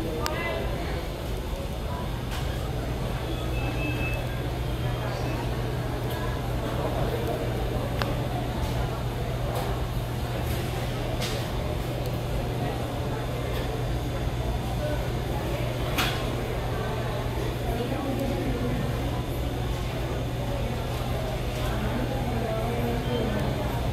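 Airport terminal room sound: a steady low hum under indistinct background voices, with a few faint clicks.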